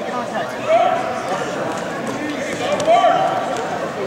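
People shouting in a gymnasium: two long drawn-out yells, about a second in and again about three seconds in, over a steady hum of background voices.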